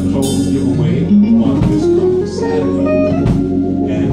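Instrumental music with guitar, bass and drums, a slow run of sustained notes with occasional drum hits.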